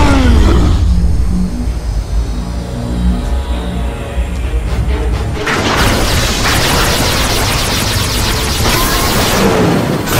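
Dramatic action-cartoon score with heavy low booming rumble under it; about five and a half seconds in it turns into a dense, loud burst of music and battle sound effects.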